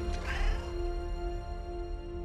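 Sci-fi film soundtrack: a held music drone over a low rumble, with a short high creature call that rises and falls in pitch in the first half-second.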